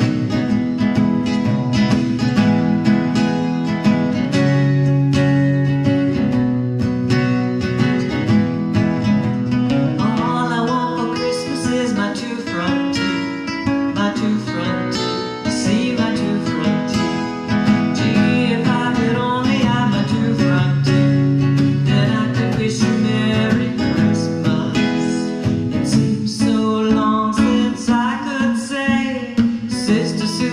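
Acoustic guitar strummed in a steady rhythm, with a voice singing along from about ten seconds in.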